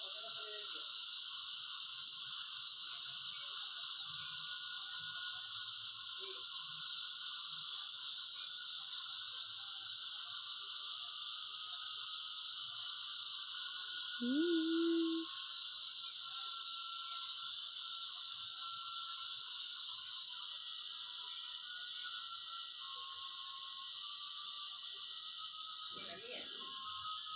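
A dense, steady, hissy wash of many video soundtracks playing over one another, with faint snatches of tones buried in it. About halfway through, a short louder tone swoops up and holds for about a second.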